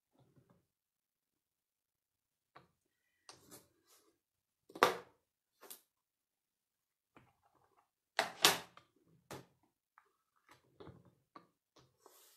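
Small metal magnets and a clear plate being set down on a stamp-positioning tool's grid base while cardstock is repositioned: a scatter of short, sharp clicks with faint paper rustles, the loudest clicks about five and eight and a half seconds in.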